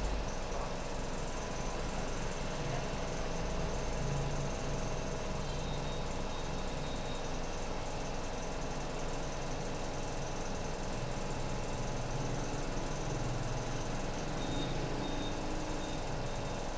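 Steady background noise with a low, wavering hum, like distant road traffic.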